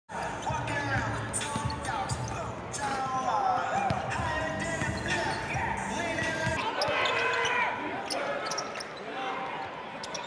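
Several basketballs bouncing on a hardwood court during warm-ups, amid a steady mix of voices in the gym.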